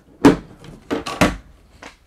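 Hinged flip-up countertop extension being handled and folded down: a sharp clack about a quarter second in, then two more knocks around the middle, the last one the heaviest.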